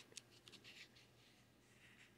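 Faint rustle of a comic book's glossy paper page being handled and turned, a few soft scrapes in the first second and another near the end.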